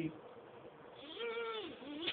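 A man's voice: one drawn-out wordless sound, under a second long, that rises and then falls in pitch, about a second in.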